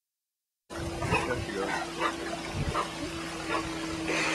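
Silent for the first moment, then a golden retriever wading through shallow lake water, with splashes coming about once a second over a steady low hum.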